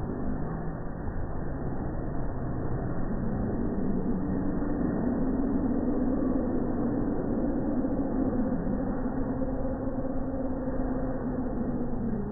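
Swinging pirate-ship fairground ride running: a continuous mechanical rumble with a steady hum that rises in pitch about four seconds in and then holds.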